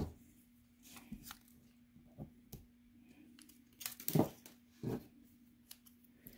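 Faint crinkling and soft ticks as a glue dot is peeled off a roll of paper-backed glue dots, with a few louder ticks about four and five seconds in. A faint steady hum runs underneath.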